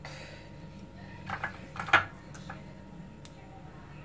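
Raw shrimp being laid by hand onto a vegetable gratin in a glass baking dish: a few soft handling sounds, the loudest about two seconds in, and a light click near the end, over a faint steady hum.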